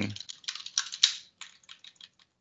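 Typing on a computer keyboard: a quick run of keystrokes, thinning to a few separate taps toward the end.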